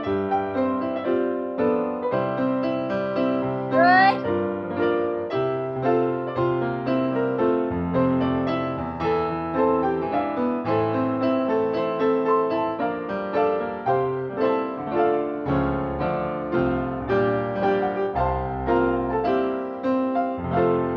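Live piano accompaniment for a ballet barre exercise: chords and melody on a steady, even beat. A short rising voice-like sound cuts in about four seconds in.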